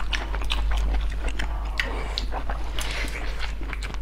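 Close-miked eating sounds: chewing and smacking mouth noises in many short, sharp clicks, over a steady low hum.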